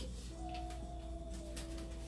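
A steady ringing tone with two pitches sounding together, starting a moment in and holding without words.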